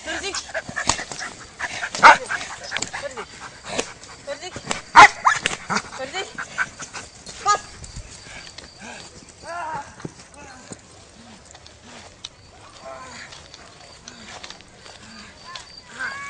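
A dog barking in sharp bursts, the loudest about two and five seconds in, with a person's voice in among them.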